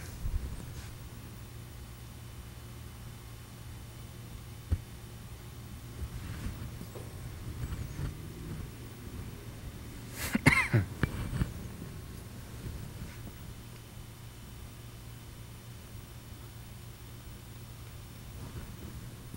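A person's short cough about ten seconds in, the loudest sound here, over a steady low hum, with a single faint click a few seconds earlier.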